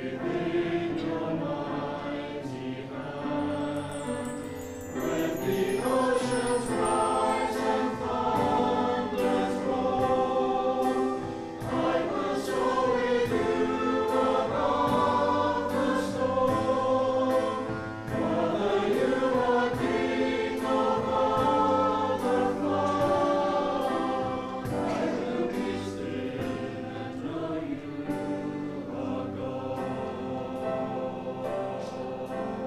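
A mixed choir of men's and women's voices, a Salvation Army songster brigade, singing a sacred song in harmony, in phrases of about six seconds with brief dips between them.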